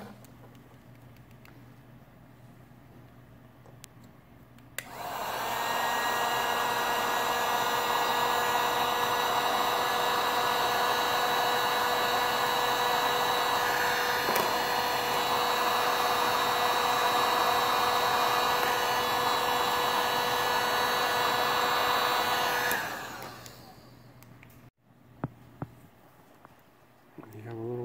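Electric hot air gun switched on about five seconds in, its fan running steadily with a motor whine for about eighteen seconds, then switched off and winding down.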